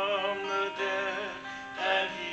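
A man singing a worship song, accompanying himself on a strummed acoustic guitar, with a fresh strum near the end.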